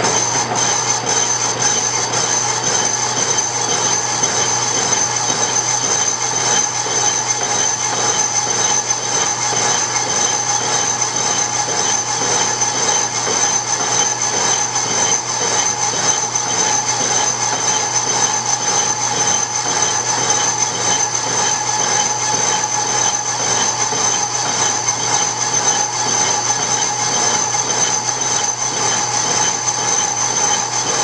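Lathe boring out a cast iron bore with a homemade boring bar tipped with a sharpened broken carbide end mill: a steady running and cutting noise with a thin, high, steady whine over it.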